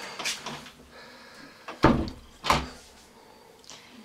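Two sharp knocks from a door banging, about two-thirds of a second apart, after a lighter knock near the start.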